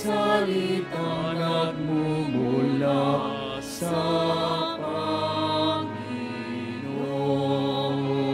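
Slow church hymn sung with long held notes that change about once a second.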